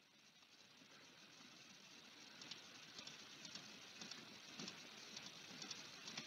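Near silence: faint room hiss, with a scatter of faint short ticks from about two seconds in.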